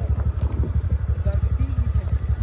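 A scooter's small engine idling: a steady, rapid low throb of firing pulses.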